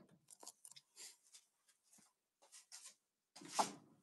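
Faint handling noises as a console panel is fitted against an aluminum boat's gunwale: scattered light taps and scrapes, then a short louder rustle near the end.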